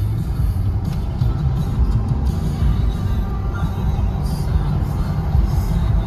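Music playing on a car radio inside a moving car's cabin, over the steady low rumble of the car driving.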